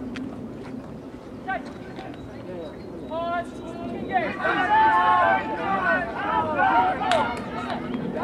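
Several people shouting during a rugby scrum: a few scattered calls at first, then from about four seconds in a run of overlapping shouts.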